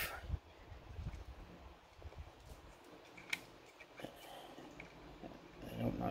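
Faint handling of a styrene model car door being worked off its straight-pin hinge, with small plastic rubs and one sharp click about three seconds in.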